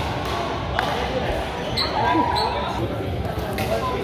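Pickleball rally in a gym: sharp, echoing pops of paddles hitting the plastic ball, about one second in and again near the end, over the hall's background of voices.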